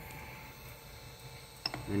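Ender 3 3D printer's cooling fans running with a low steady hum while the nozzle is hot, and one short sharp click near the end from the control knob being handled.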